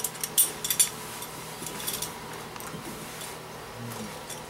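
Trousers being pulled up: clothing rustling with a few light clinks, most of them packed into the first second.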